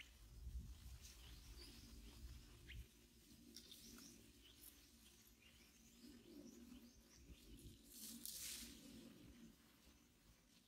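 Faint forest ambience with a few short, faint bird chirps; a low rumble during the first three seconds and a brief hissing rustle a little after eight seconds.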